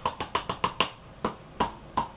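A roll of blue tape slapped and tossed between the palms: a quick run of sharp taps, about five or six in the first second, then a few more spaced further apart.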